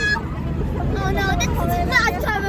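Several people's voices chattering indistinctly over a steady low engine rumble.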